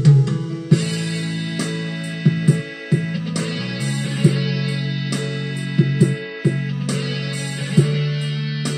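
Instrumental break of a karaoke backing track: sustained guitar chords over a bass line, with a beat of sharp percussive hits and no singing.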